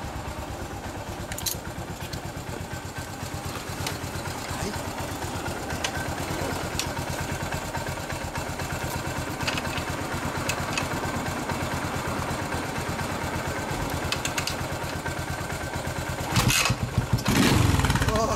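Yamaha SR single-cylinder four-stroke motorcycle engine idling steadily, with louder revs near the end.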